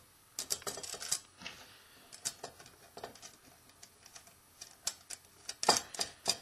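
Light, irregular metallic clicks and taps as small steel washers, nuts and a battery-cable terminal are handled and fitted onto a stainless-steel bolt, with a cluster of clicks near the end.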